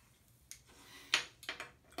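A man's breath: a few short, hissy puffs and a faint voiced sigh, from about half a second in, as he draws on and exhales from a freshly lit cigarette.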